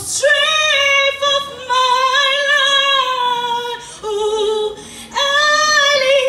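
A woman singing solo into a handheld microphone, with no accompaniment heard. She holds long, slightly wavering high notes, drops softer and lower for a moment near the middle, then comes back up to a strong held note about five seconds in.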